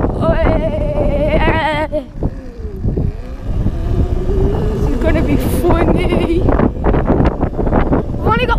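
Electric dirt bike ridden over rough grass and a dirt track, heard from its own mount: wind on the microphone and a steady rumble from the bumpy ground, with the motor's whine dipping and rising in pitch a couple of seconds in as the rider eases off and speeds up again.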